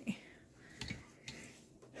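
A few faint, short clicks and rustles, about four in two seconds.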